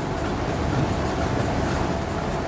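Steady hiss and low hum of room air conditioning.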